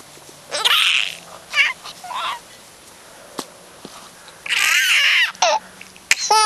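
A baby squealing and laughing in short excited bursts, the longest about four and a half seconds in, with one sharp tap about three and a half seconds in.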